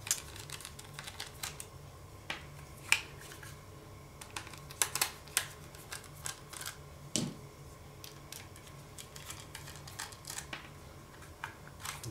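Faint, scattered clicks and light metallic ticks as small screws are turned out of the sides of a laptop hard drive's metal caddy with a small screwdriver, the drive and tray being handled between turns.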